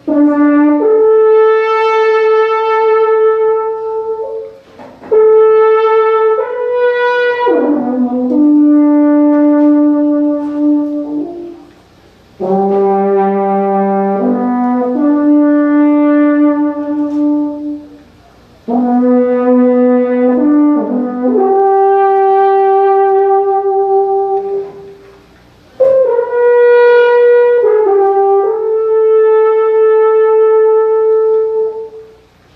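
Alphorn, a long wooden natural horn, played solo: a slow melody of long held notes with rich overtones, in five phrases with short pauses for breath between them.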